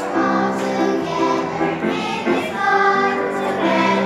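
Children's choir singing.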